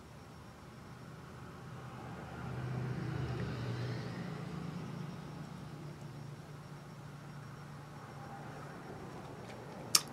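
Faint low hum that swells over the first few seconds, then slowly fades, over quiet room tone.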